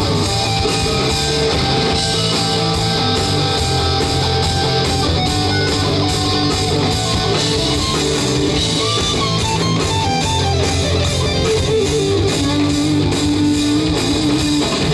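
Live hard rock band playing loud and steady: two electric guitars, a Gibson Les Paul and a Gibson SG through Marshall amps, over bass and drum kit.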